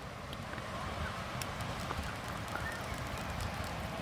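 Palette knife working oil paint on a wooden palette: faint scattered ticks and scrapes. Under them runs a low, steady rumble.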